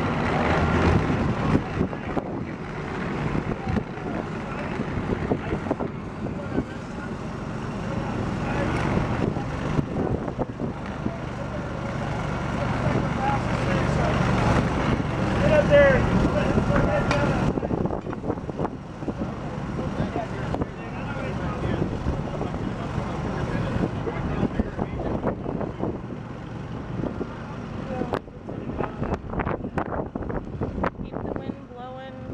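A fire truck's engine running steadily, with a low hum that is strongest about halfway through, while people talk indistinctly in the background.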